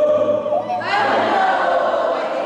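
Voices singing a Hawaiian chant in a choral style: a long held note, then a new phrase sliding up in pitch about a second in.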